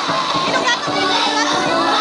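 A group of small children's voices, chattering and calling out together, over music.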